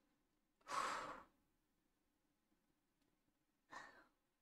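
A woman sighs once, a breathy exhale about a second in, followed by a short breath near the end; otherwise near silence.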